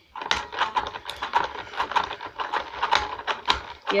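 Toy spin art machine spinning its paper tray, with a fast, irregular plastic clicking and rattling over a faint steady whine.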